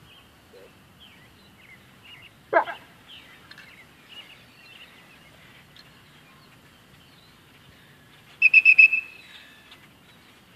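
Dog-training whistle blown as a quick run of about five short, shrill pips near the end, calling the dog in. Birds chirp faintly throughout.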